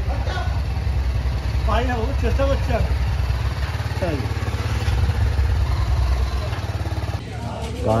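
TVS Apache RR 310's single-cylinder engine idling steadily.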